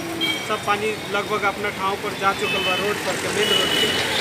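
Busy street traffic with motorcycles and rickshaws passing and people talking. A vehicle horn sounds briefly near the end.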